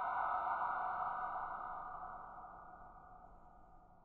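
A ringing tone of several steady pitches that fades away over about three and a half seconds: the tail of the sound effect that marks a new story's title.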